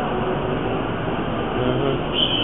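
Steady running of a large emergency vehicle's engine, an even rumble with a faint low hum.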